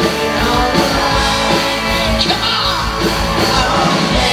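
Live rock band playing at full volume, with electric bass, guitars and drums, and the bassist singing lead into his microphone.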